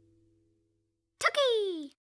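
The last notes of the end music fade out, then after a short silence a pop and a high voice calling one short word whose pitch slides downward, cut off just before the end.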